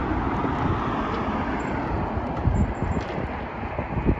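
Wind buffeting a handheld phone microphone in irregular low gusts, over a steady rush of street traffic.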